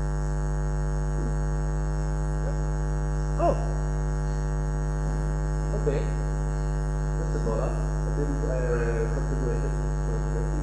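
Steady electrical mains hum, a constant buzz made of many evenly spaced tones. Faint, brief snatches of a voice come through it a few seconds in and again near the end.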